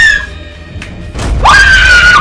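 A woman screaming twice: a short high shriek at the start, then a longer, sustained one that begins about a second and a half in, over background film music.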